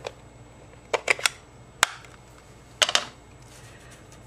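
Light taps and clicks of rubber stamping: an ink pad dabbed onto a stamp held in a plastic stamping tool, and the tool's lid pressed and lifted. There are three quick taps about a second in, one sharp click near two seconds, and another short cluster near three seconds.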